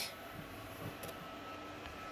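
Quiet room tone: a faint steady hum with a thin, high, steady whine and no distinct events.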